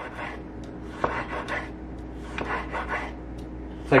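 Sharp chef's knife slicing a Roma tomato on a wooden cutting board: soft rasping strokes as the blade passes through the fruit, with one knock of the blade on the board about a second in. The knife goes through easily, "like butter".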